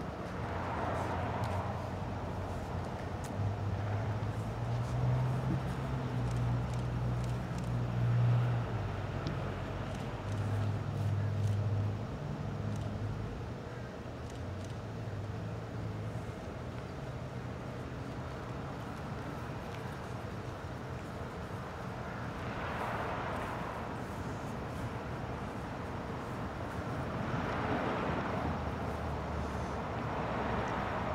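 A motor vehicle running close by, its low engine hum swelling over the first dozen seconds and then fading. Two cars pass on the road near the end.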